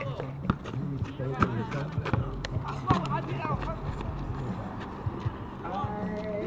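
Basketball game on an asphalt court: the ball bouncing and feet running on the pavement in a string of short sharp knocks, with players' voices calling out around them over a steady low hum.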